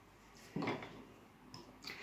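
A brief knock of something being handled, about half a second in, and a fainter click near the end, against a quiet room.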